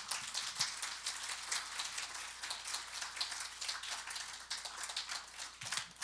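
Audience applauding: a dense patter of many hands clapping that tapers off near the end.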